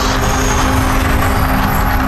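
Mirage volcano show erupting: gas fire bursting up with a steady loud rush over a deep rumble.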